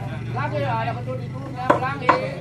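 Men calling out over a steady low hum while working a tall wooden swing post loose, then a single sharp knock of a tool striking, near the end.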